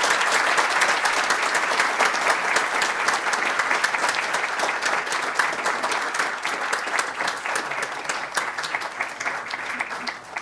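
Audience applauding, the clapping thinning out and fading over the last few seconds.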